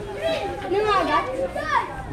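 Children's voices chattering and calling out, several at once.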